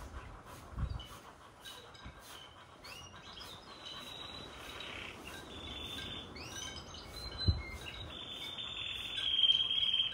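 Birds chirping and singing in high, sliding notes, building up and growing louder toward the end. Two dull thumps come just under a second in and again about three-quarters of the way through.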